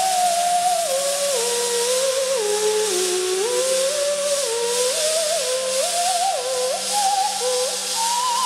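Theremin playing a slow melody of sliding, stepping notes in the middle register, over the steady hiss of two robotic welders' arcs and a low electrical hum.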